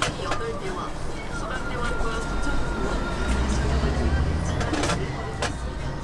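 Cast-iron taiyaki moulds clinking a few times as they are handled and turned. A low rumble of a passing vehicle swells in the middle.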